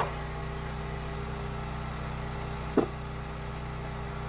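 Wolfe Ridge 28 Pro log splitter's gas engine running steadily at a constant speed. A sharp knock of split firewood landing comes about three seconds in, with a faint click at the very start.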